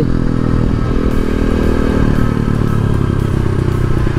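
A 125cc dirt bike's single-cylinder engine running steadily under way at cruising speed, heard from the rider's seat.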